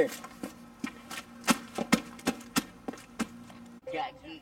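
A quick, irregular run of sharp thumps and knocks, about three a second, each one short and separate.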